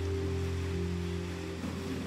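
Soft background music: a low sustained chord held steadily, with a few of its upper notes changing near the end.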